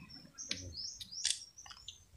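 A small bird chirping in the surrounding woodland: several short, high chirps. Between them come a few brief, soft noises from someone eating noodles with chopsticks.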